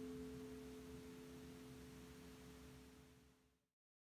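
A chord on a Jackson Pro V aluminum pedal steel guitar ringing out, several steady notes slowly fading to faint, then cut off suddenly near the end.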